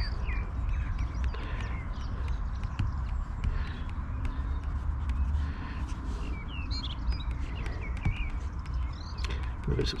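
Outdoor ambience: wind buffeting the microphone with a low rumble, small birds chirping on and off, and light scratching of a graphite stick on paper.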